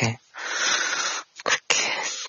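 A man's long breathy sigh, about a second long, in the middle of a sentence, before he goes on speaking.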